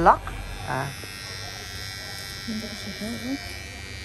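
Rechargeable men's electric hair clipper switched on just under a second in, then running with a steady buzz.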